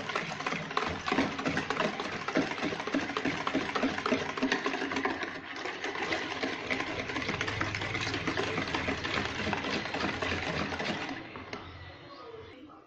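Wire whisk beating batter in a plastic bowl: a rapid, steady clatter of the metal wires against the bowl, which stops shortly before the end.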